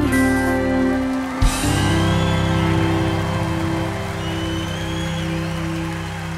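A country band holds the final chord of a song, with acoustic guitar and gliding steel guitar notes over it. A last hit comes about a second and a half in, and the audience starts applauding over the ringing chord.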